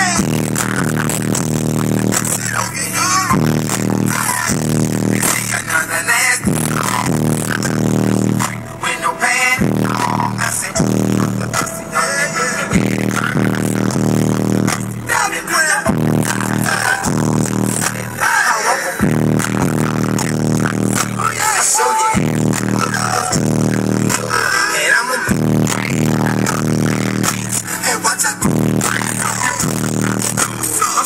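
A song with vocals played very loud on a truck's aftermarket car-audio system, its subwoofers pushing a heavy bass line, heard inside the cab.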